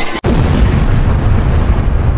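A loud explosion standing in for a Polish firecracker (Polenböller) going off: a blast cut off briefly just after the start, then a long, bass-heavy rumble.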